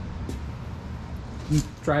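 Low steady background hum of room noise, with a man's voice starting near the end.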